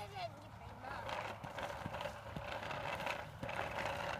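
Faint voices with scattered light taps and scuffs of footsteps on tarmac while a child's small bicycle is wheeled along.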